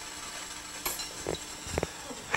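Room tone: a faint steady hiss and hum with a few small clicks around the middle and late on.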